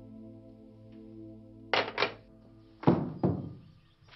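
Film soundtrack: a soft, held background-music chord that fades out near the end, broken by four sharp knocks, two close together a little under two seconds in and two more about three seconds in, the later ones ringing on briefly.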